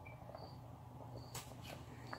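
Thick tomato sauce bubbling in a pot: faint scattered pops and ticks of bursting bubbles over a low steady hum.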